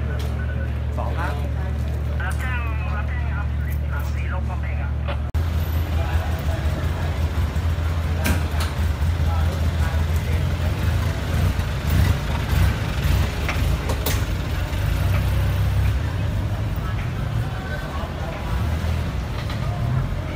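Low rumble of a large vehicle's engine running, with faint voices in the street. About five seconds in the sound cuts abruptly to a louder, rougher rumble with scattered clicks and knocks.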